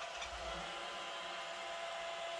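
An iRobot Roomba robot vacuum running with a steady whir as it moves slowly along a wall.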